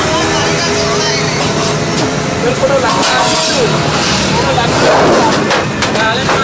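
Busy street background: steady traffic noise with people's voices talking nearby, and a few short knocks near the end.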